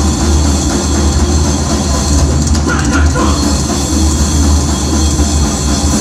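Thrash metal band playing live: distorted electric guitars, bass and drum kit, loud and continuous with a heavy low end.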